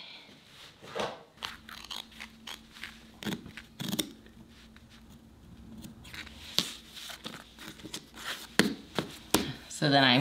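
Scissors snipping through fabric and tape: a run of short sharp clicks in the second half, after quieter handling and rustling of fabric, over a faint steady hum.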